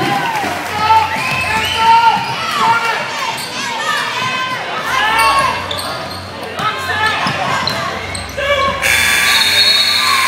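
Basketball game in a gym: sneakers squeaking on the hardwood and voices calling out on and around the court. About nine seconds in, the scoreboard buzzer sounds for about a second, ending the quarter as the clock hits zero.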